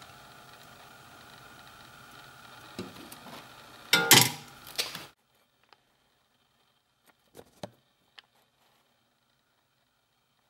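Faint steady room hum with a click and a brief scraping rustle of hand handling about four seconds in, then the sound cuts to near silence broken by a few faint ticks.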